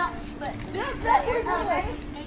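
Indistinct, high-pitched children's voices calling and chattering at play, loudest a little past the middle, over a steady low hum.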